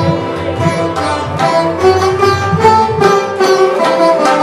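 Sarod being played in a Hindustani classical style, a run of quick plucked notes with a longer held note in the middle, with tabla accompaniment.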